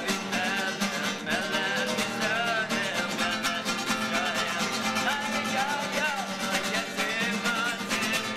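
Acoustic guitar played live, with a man singing a melody over it.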